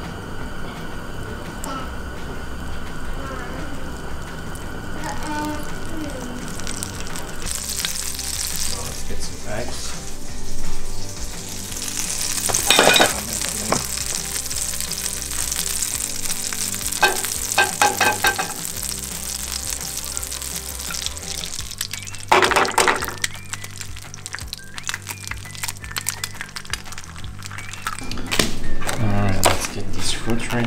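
Butter sizzling in a hot nonstick frying pan, the sizzle growing stronger several seconds in as the butter foams. A few sharp knocks and clatters sound over it.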